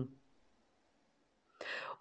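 A woman's word trails off, then near silence, then a short breathy in-breath near the end as she is about to speak again.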